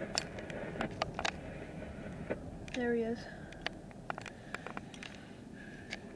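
Irregular clicks and knocks from handling, heard inside a car, with one short hummed vocal sound about three seconds in.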